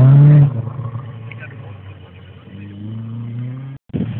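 Rally car engine revving hard at the start, then dropping away after about half a second as the car pulls off. Near the end a quieter engine note climbs steadily as it accelerates again, then cuts off abruptly.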